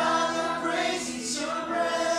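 A small mixed group of adults and children singing a worship song together, holding long notes, with a new phrase starting just after halfway.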